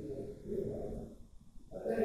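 A man's voice talking low and muffled, too indistinct to make out words, in two stretches with a short break about one and a half seconds in.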